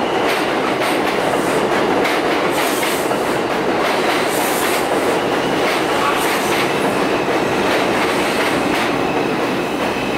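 Bombardier R142 subway train running into the station alongside the platform, with steady loud rolling noise and wheels clicking over rail joints.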